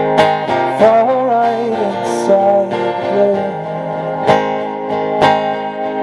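Steel-string acoustic guitar strummed slowly in a live ballad, a few strums ringing out. A wavering wordless vocal line sits over the first half.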